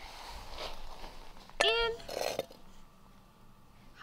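A person's short, high-pitched vocal sound that rises and falls, about one and a half seconds in, followed at once by a brief rustling noise; faint handling noise before it.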